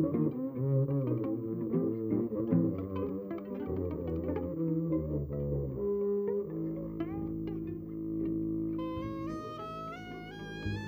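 Live avant-garde jazz from a string-led ensemble. Double basses and cello pick out busy low lines, then about two-thirds of the way in the texture settles into held notes. Near the end a high bowed violin line climbs in steps.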